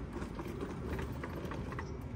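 A folded power wheelchair being wheeled and turned around by hand on asphalt: a few light clicks and rattles from its frame and wheels, with footsteps, over a steady low rumble.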